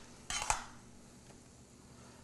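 A metal spoon scraping and clinking in a metal saucepan of mashed potatoes, a short scrape with two light clinks about half a second in.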